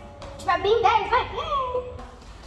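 Speech-like vocalising by a girl, starting about half a second in, with the pitch sliding up and down and ending on a long falling note.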